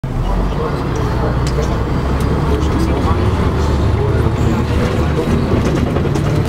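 Inside a city bus pulling away from a stop and driving: steady low engine and road rumble with scattered rattles, under people's voices.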